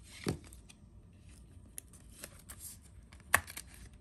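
A trading card being handled and slid into a rigid plastic toploader: faint scraping and rustling with scattered short clicks, the sharpest a little over three seconds in.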